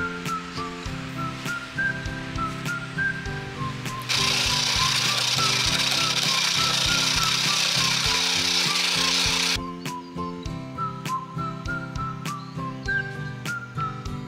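Blue plastic shaved-ice (kakigori) machine shaving ice, a loud, steady grinding that starts about four seconds in and cuts off sharply about five seconds later. A whistled background tune plays throughout.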